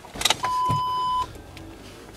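A single steady electronic beep inside a car, holding one pitch for under a second before cutting off, after a few light knocks of handling. A faint low cabin hum follows.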